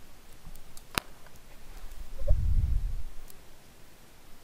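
A single sharp click about a second in, then a low dull rumble lasting under a second, the loudest sound here, with a few faint ticks around them.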